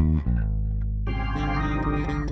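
Live band music: an electric bass guitar holds a long low note, with sustained organ-like chords coming in about a second in.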